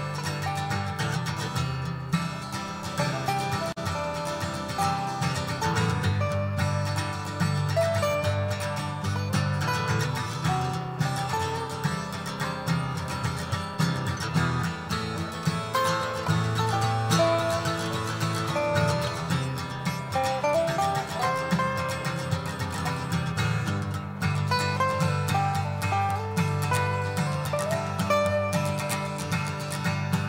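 Acoustic guitars playing an instrumental break in a country song: a picked melody over strummed chords, with no singing.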